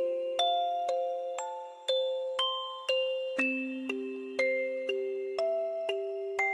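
Music-box background music: a slow lullaby-like melody of single plucked metal notes, about two a second, each ringing briefly and fading.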